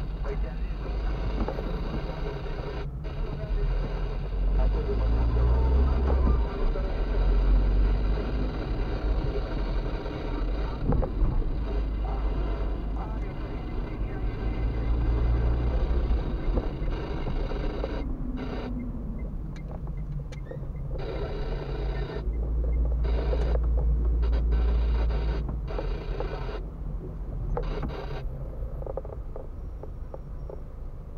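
Car engine and tyre noise heard from inside the cabin while driving slowly, the low rumble swelling a few times as the car speeds up.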